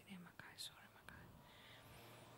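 Near silence: a faint breathy sound and low room hum close to a handheld microphone.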